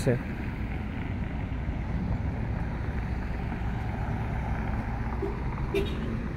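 Steady low outdoor rumble of wind on the microphone and distant road traffic, with a brief faint sound near the end.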